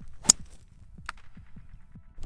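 Driver striking a golf ball off the tee: one sharp crack about a quarter second in, followed by a much fainter click about a second in.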